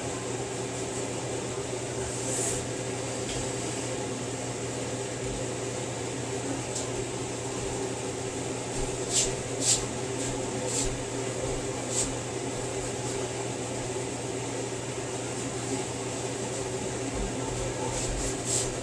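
A steady mechanical hum at an even level. A few faint, brief scrapes and rustles come about halfway through, as hands work biscuit dough scraps together on a floured wooden board.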